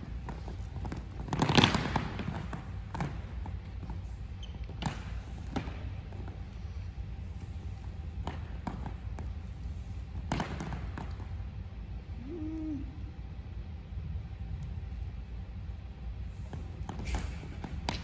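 Occasional short thuds and taps in a large gym, the loudest about a second and a half in, over a steady low hum.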